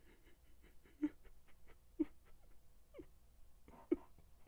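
A man crying: short whimpering sobs, about one a second, each bending down in pitch.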